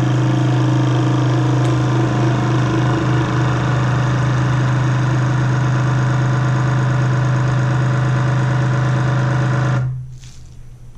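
NutriChef countertop vacuum sealer's pump motor running with a loud, steady hum as it draws air out of a bag on its normal, moist setting. It cuts off suddenly near the end, when the vacuum-and-seal cycle finishes.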